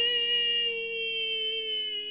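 A voice holding one long, high note on a drawn-out vowel, sinking slightly in pitch as it goes, over faint steady background music.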